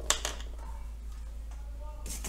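A single sharp click about a tenth of a second in, with a few lighter taps around it, from a hand handling things on a tabletop, over a low steady hum.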